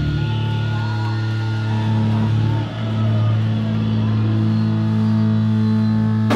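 Electric guitar and bass amplifiers holding a loud, sustained low droning note with ringing overtones and a wavering feedback tone above it, without drums; the level dips briefly a little under halfway through.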